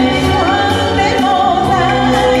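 A woman singing a Vietnamese song into a microphone over a karaoke backing track, with a wavering held note early on.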